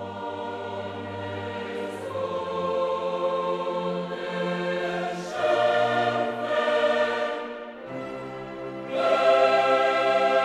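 Background choral music: a choir singing long held chords that change every second or two, swelling louder about halfway through and again near the end.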